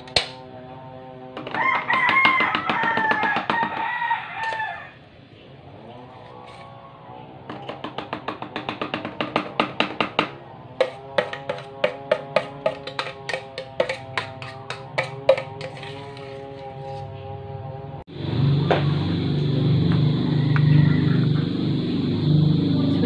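A rooster crows once, loudly, about two seconds in. A run of rapid, evenly spaced pulsed sounds follows. Near the end a motor vehicle's engine comes in suddenly and keeps running.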